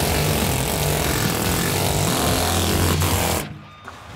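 Hand-held pneumatic chisel (a shop-made air hammer) hammering caked carbon buildup off the inside wall of a steel kiln. It starts abruptly and stops suddenly about three and a half seconds in.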